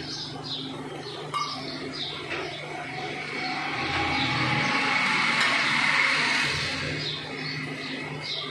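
Small birds chirping in quick repeated calls, with a broad rush of noise that swells and fades in the middle over a steady low hum.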